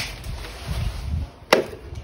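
A single sharp knock, like an object tapped or set down on a hard surface, about a second and a half in, with faint handling noise before it.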